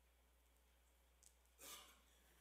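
Near silence: a low, steady hum of room tone, with a short, soft breathy rustle near the end.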